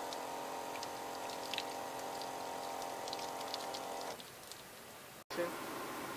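Flowjet electric water pump on the Jeep's onboard water system running with a steady hum while water spatters from the outlet, stopping about four seconds in.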